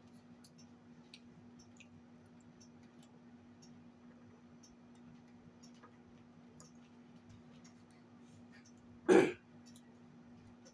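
Quiet mealtime table sounds: faint clicks of fork and knife on plates and soft eating noises over a steady low hum. About nine seconds in there is one short, loud burst.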